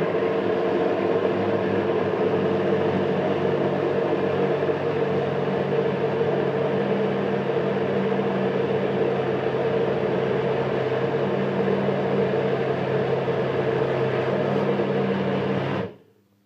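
Personal blender with an inverted cup pressed onto its motor base, its motor running steadily as it blends a thick mixture to a smooth paste. It stops suddenly near the end.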